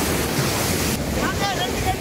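Sea surf washing onto a sandy beach, a steady rushing noise, with wind buffeting the microphone.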